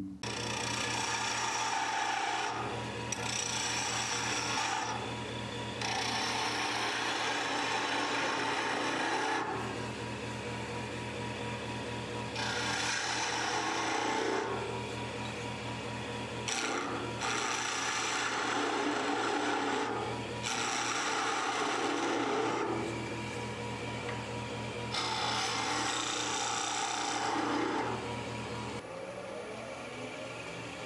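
Wood lathe running with a steady hum while a turning tool cuts a bead into a spinning lacewood spindle. The cutting noise comes in about seven passes of two to three seconds each, with short pauses between them.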